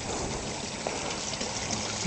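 Rainwater runoff running down into a street storm-drain grating, a steady rush of water. The drain is taking the flow freely, not plugged.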